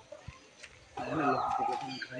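A chicken calling once, starting about a second in and lasting just under a second.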